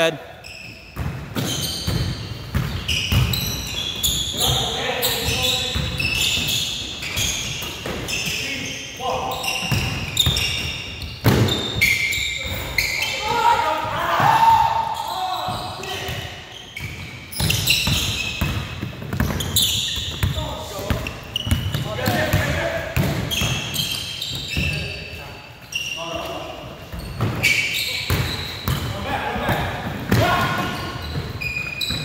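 Basketball bouncing on a hardwood gym court as it is dribbled, with many short sneaker squeaks and players' voices, echoing in a large hall.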